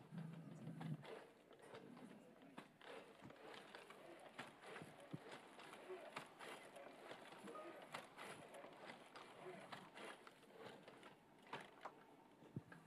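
Very faint, irregular clicks and knocks from a Wandercraft powered exoskeleton as its wearer moves and steps in it, with a brief low hum about the first second.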